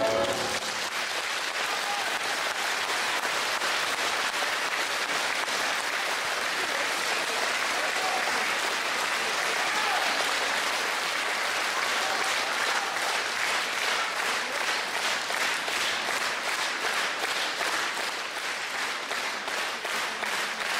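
Audience applauding steadily after a song, starting as the last piano-and-voice chord dies away.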